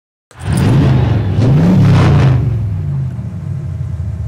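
A vehicle engine coming in loud and being revved twice, its pitch rising and falling each time, then settling to a steady run.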